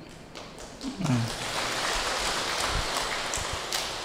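Audience applause, starting about a second in just after a brief spoken "à" and continuing steadily.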